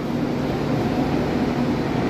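Steady background hum of a railway station concourse, even and unbroken, with a faint low drone and no distinct events.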